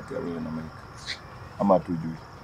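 Short snatches of a person's voice over a steady high-pitched whine, with a faint click about a second in.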